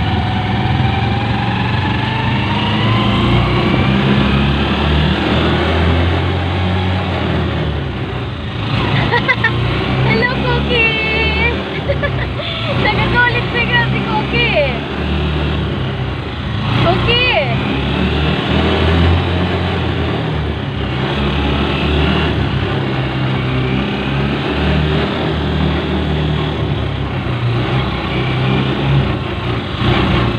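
Motorcycle engine of a tricycle (motorcycle with sidecar) running on the move, its pitch rising as it speeds up in the first few seconds. A few brief high wavering sounds come over it in the middle.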